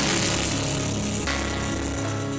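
Live church praise and worship music: a band playing steady bass and held chords while the choir sings.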